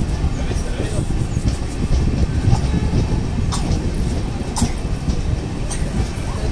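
Passenger train coach running on the track: a steady low rumble with a few sharp wheel clicks on the rails in the second half.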